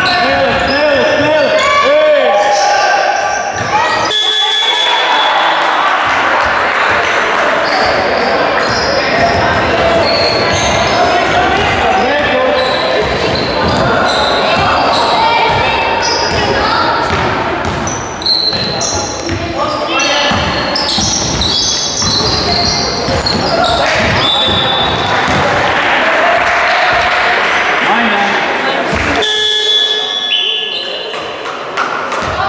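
Basketball bouncing and being dribbled on a wooden gym floor during play, with sneakers squeaking and players' and spectators' voices calling out, all echoing in a large sports hall.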